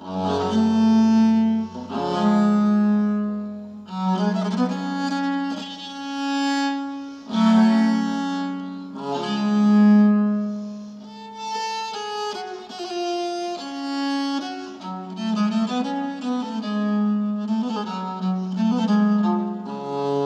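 Bass viola da gamba played solo with a bow: a slow melody of held notes, one to two seconds each, often with two strings sounding together. A low note sustains under the opening two seconds.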